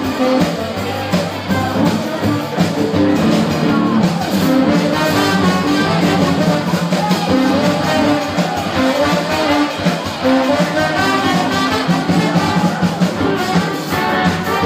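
Loud live band music with a steady beat, played at a dance.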